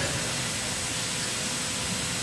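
Steady, even hiss of background noise in the recording, with a faint high whine and a fainter low tone running through it.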